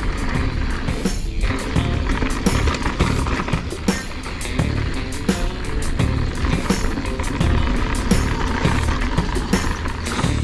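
Mountain bike rolling fast down a rough dirt trail: steady wind rumble on the microphone and frequent irregular clicks and rattles from the bike over the ground, with music playing alongside.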